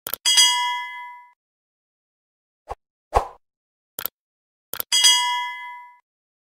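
An electronic ding chime rings and fades over about a second. A few short, sharp clicks follow, and then the same ding sounds again near the end.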